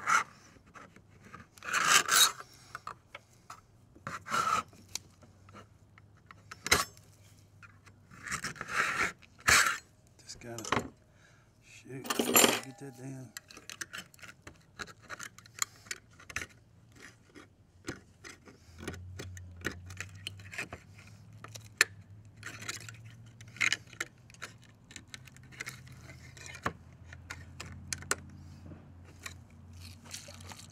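A kitchen knife punching into and prying open the lid of a tin can: sharp metal clicks, scrapes and clinks, in several louder bursts over the first half, then lighter clicking.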